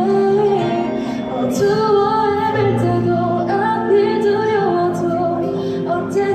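A teenage girl singing a Korean ballad through a handheld microphone, holding long notes in a clear voice over an instrumental accompaniment.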